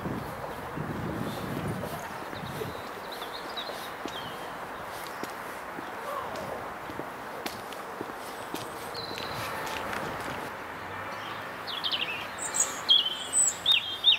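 Steady outdoor background noise by a town river, with small birds chirping: a few short calls about three seconds in and a busier run of chirps over the last two seconds. Faint footsteps on a paved path underneath.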